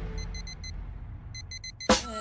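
Digital alarm clock beeping, two quick runs of four short high beeps, over a low rumble. A sharp hit comes just before the end.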